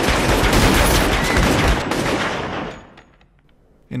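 Film-soundtrack gunfire from a shootout: a loud, dense volley of many overlapping shots that dies away about three seconds in.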